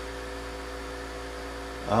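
Steady electrical hum from a Palomar 90A tube linear amplifier keyed down with a dead carrier under load: a few level, unchanging tones over a low mains hum.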